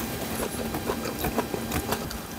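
A person chewing a mouthful of yukhoe bibimbap (raw-beef bibimbap) close to the microphone: a run of small, irregular, wet clicking mouth sounds.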